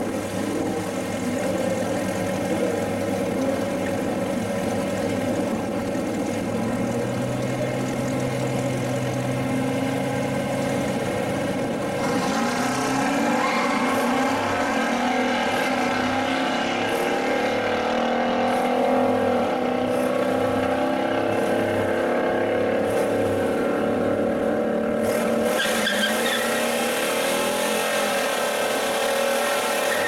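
1969 Plymouth Road Runner's 440 cubic inch big-block V8, fed by three two-barrel carburetors, idling steadily and then running with a lumpy rhythm and rising and falling revs as the car moves up. Near the end the revs climb into a burnout, with the rear tires squealing.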